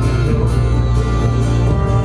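Live band playing amplified folk-rock: strummed acoustic guitar, electric guitar, bass and drums, with cymbal hits on a steady beat.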